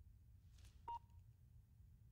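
A mobile phone gives a single short electronic beep about a second in, the tone of a call being ended; otherwise near silence with a low hum.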